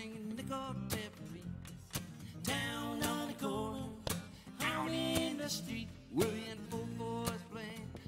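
Strummed acoustic guitar and electric bass playing an upbeat country-rock tune, with a sliding, wavering melody line over the top.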